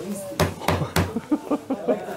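Three sharp knocks about a third of a second apart, over low chatter from a group of people in a room.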